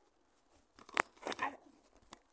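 A single sharp knock about a second in as the camera is struck and tipped over, followed by a short stretch of fainter scraping and handling noise.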